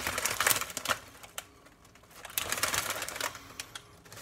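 Potato chip bag crinkling and crackling as it is handled, in two bouts: during the first second and again from a little past two seconds in.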